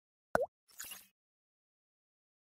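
Cartoon pop sound effect from an animated graphic: a short bubbly blip whose pitch dips and bends back up, followed about half a second later by a brief soft sparkly swish.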